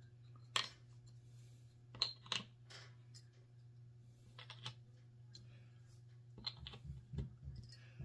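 Faint, irregular clicks and taps of metal crown bottle caps being handled and pressed into round holes in a wooden plaque, with a steady low hum underneath.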